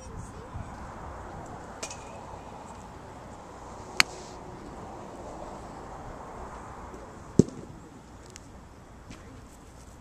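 A golf club strikes a ball off a driving-range mat with a sharp smack about seven seconds in, sending it along the ground. A thinner, sharp click comes a few seconds before it.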